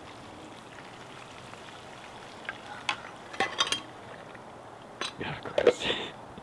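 A metal pot handled against a plastic colander with a few sharp clinks and knocks, then near the end hot water and melted wax poured from the pot through the colander, splashing onto snow.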